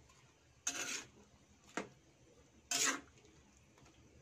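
Metal tongs stirring vegetables and shrimp in coconut milk in a stainless steel pan. There are two short scrapes of metal against the pan, with a single sharp clink between them.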